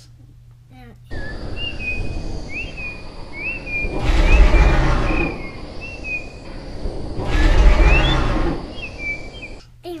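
A bird's short rising chirp, repeated again and again over a steady rushing noise, with two loud rushing swells about four and seven and a half seconds in. The whole bed starts and stops abruptly.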